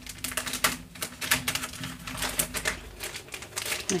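Clear plastic bag crinkling and crackling in irregular clicks as it is handled and opened by its taped flap.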